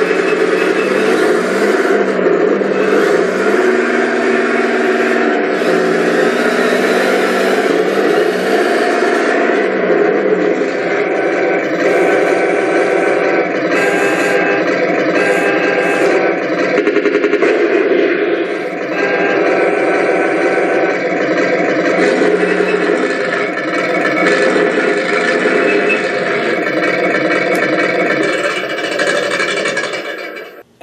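Simulated tank engine sound from a Tamiya 1/16 RC tank's onboard sound unit, played loudly through its speaker as the model drives. The pitch rises and falls for the first ten seconds or so, then runs steadier.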